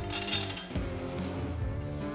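Background guitar music with a steady beat, and a brief bright clink in the first half-second.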